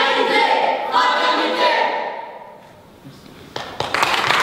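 Several voices together in unison, held for about two seconds and then fading away. A few scattered hand claps begin near the end, the start of applause.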